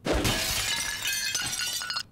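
Fight-animation sound effect of something shattering and crumbling: a sudden crash, then a scatter of many small clinking, debris-like ticks that slowly fades over two seconds.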